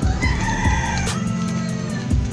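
A rooster crows once, one call of about a second that begins just after the start and trails off.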